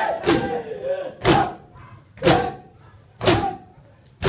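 A crowd of men performing sina zani, striking their chests in unison about once a second. Each of the four strikes comes with a short collective shout.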